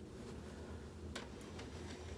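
Quiet room with a steady low hum and two faint clicks a little past a second in, heard while a quilt is handled.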